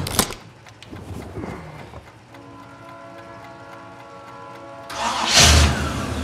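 A car's ignition key turned with a couple of sharp clicks at the start. About five seconds in, after a held musical chord, the engine starts with a sudden loud burst and keeps running.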